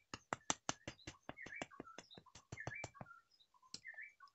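White-rumped shama (murai batu) calling: a rapid run of sharp clicks, about five or six a second, mixed with short whistled notes. The run stops about three seconds in, and one more click and note follow near the end.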